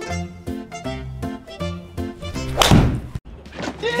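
Background music with evenly spaced notes, then about two-thirds in a single loud thunk of a golf club striking the ball in a simulator bay: a shank, the ball struck off the club's hosel. A man's drawn-out "Damn!" starts at the very end.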